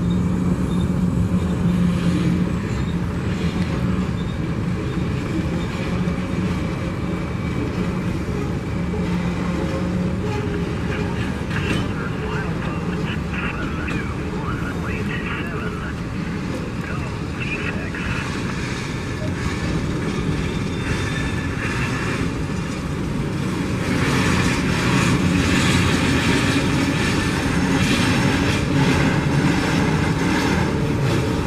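Freight cars of a passing train rolling by: a steady rumble of wheels on rail. It grows louder about three-quarters of the way through.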